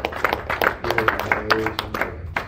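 A small congregation clapping in praise, with many sharp hand-claps and voices calling out among them.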